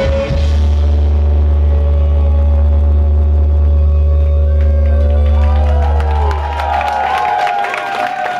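Live rock band letting the song's final chord ring out on electric guitars, over a low sustained note that fades away about six to seven seconds in. Guitar notes bend and slide over it near the end as the crowd starts cheering.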